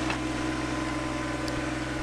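John Deere 1025R compact tractor's three-cylinder diesel engine running at a steady hum while the tractor pushes wet snow with its front blade.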